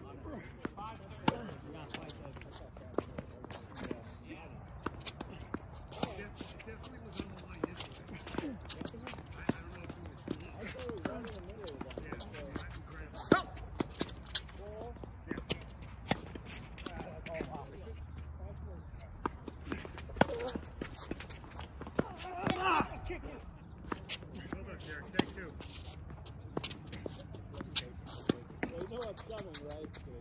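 Tennis ball struck by rackets and bouncing on a hard court in a doubles rally: sharp pops coming one to a few seconds apart, with voices in the distance.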